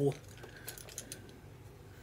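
A few faint, light clicks and taps of makeup brushes being picked up and handled.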